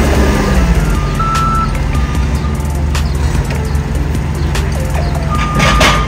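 A forklift working at a refrigerated trailer over a steady low engine drone. A high beep, typical of a forklift's backup alarm, sounds briefly about a second in and again near the end, and there are scattered knocks from the handling.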